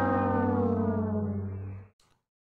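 A brass-horn musical sound effect holding one long note whose pitch sags slightly, fading out just before the end.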